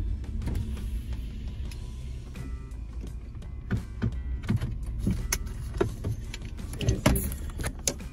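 Engine and road noise inside a V6 sedan's cabin while cruising on the highway: a steady low rumble that eases off a little early on, with scattered clicks and knocks from inside the car.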